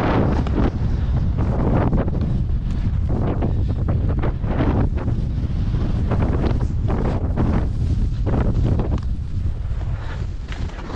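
Heavy wind buffeting the camera's microphone during a fast ski run, with rushes of snow scraping under the skis in repeated surges about once a second as the skier turns.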